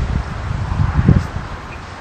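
Wind buffeting the microphone: an uneven low rumble in gusts that eases off about halfway through.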